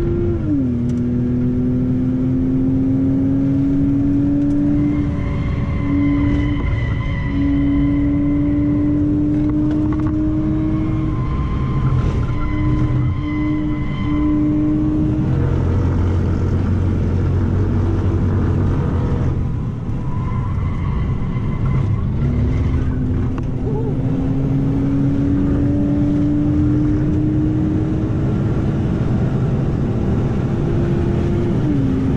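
BMW E90 325i's straight-six engine pulling hard, heard from inside the cabin through the automatic gearbox's gears. The note drops at an upshift about half a second in, then climbs slowly through the gear. It falls away for several seconds in the middle, as when lifting off for a corner, then climbs again toward the end. Steady road and wind noise runs underneath.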